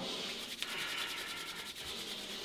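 A man's palms rubbed briskly together to warm them up, a steady dry rasp of skin on skin with fast, even back-and-forth strokes.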